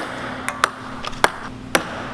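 A plastic ping-pong ball bouncing on a wooden floor: about five sharp taps at uneven intervals.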